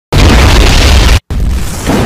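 Loud, rumbling boom sound effect with a heavy low end. It cuts out abruptly for a split second about a second in, then carries on.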